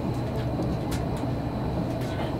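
Cabin noise of an Odakyu limited express train running at speed: a steady low rumble of wheels and running gear, with a few light clicks about half a second and a second in.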